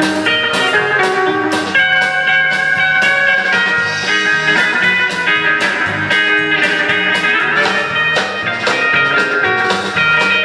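Live rock band playing an instrumental passage: electric guitar over a steady drum kit beat.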